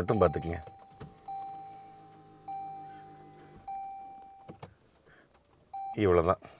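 Toyota Vellfire hybrid's dashboard chime sounding as the car is powered on: three clear tones about a second apart, each fading out, and a short fourth near the end. A low electric whir runs under the first two chimes, and a couple of light clicks follow.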